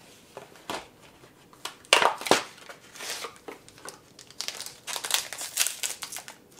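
A few light knocks of things being set down on a counter, with two louder knocks about two seconds in. Then comes a run of crinkling and rustling near the end as chocolate bar packaging is handled.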